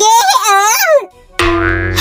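A dubbed cartoon voice speaks briefly, then after a short pause a comic sound effect cuts in suddenly about one and a half seconds in: a steady tone with many overtones and a low hum beneath it.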